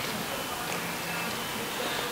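Steady city street background noise, a low hum of traffic and passers-by, in a pause between spoken answers.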